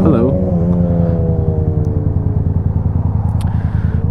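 Motorcycle engines running in traffic: a Yamaha R6 sportbike's inline-four alongside, its note dipping briefly near the start, then falling slowly in pitch and fading over about two seconds, over the steady low running of the rider's own motorcycle. The rider calls the R6 clapped out.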